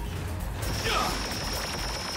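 Cartoon energy sound effect: a thin, steady high-pitched whine that comes in about half a second in, over the low rumble of the background score.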